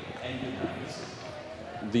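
Ice-rink hall ambience: a steady low background with faint, distant voices.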